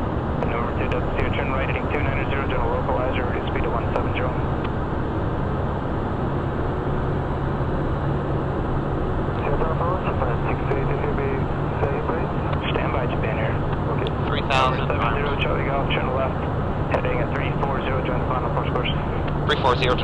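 Steady cockpit drone of a Cessna Citation 501 business jet in flight, its engine and slipstream noise heard from the flight deck, with a steady low hum underneath.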